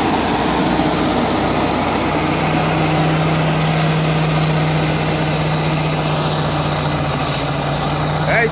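Caterpillar motor grader's diesel engine running steadily under load as the machine grades the earth roadbed, a constant low drone that holds through the whole stretch.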